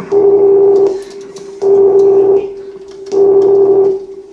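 Live experimental electronic music: a steady electronic drone, with three loud, noisy pulses on the same pitch, each under a second long and about a second and a half apart.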